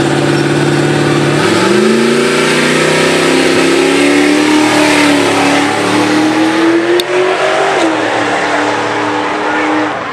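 Chevrolet Monte Carlo SS drag car held at steady revs on the start line, then launching about a second and a half in. The engine note climbs as it pulls hard away down the strip, then drops back a couple of seconds before the end.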